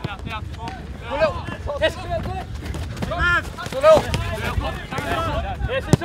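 Footballers' short shouted calls on an open pitch, with wind rumbling on the microphone. Near the end, one sharp thud as a football is kicked.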